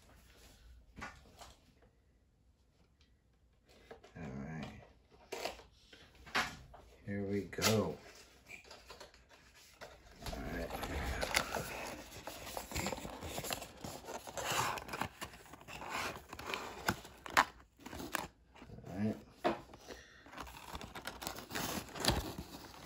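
Cardboard box and clear plastic tray of a diecast model truck being handled and unpacked: small clicks and taps at first, then from about ten seconds in a busy rustling and crinkling of card and plastic, with scrapes and taps.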